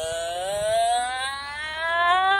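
A woman's voice drawn out in one long, unbroken wail that slowly rises in pitch. It is a slow-motion imitation of a cartoon fish talking.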